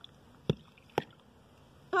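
Two short knocks about half a second apart, the first with a duller thud, as an upturned bowl is handled to release a frozen dome of ice.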